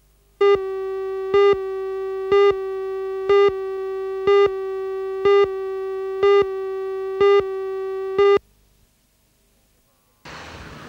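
Countdown leader tone on a television news tape: a steady buzzy tone with a louder beep once a second, nine beeps in all, which cuts off suddenly about eight seconds in.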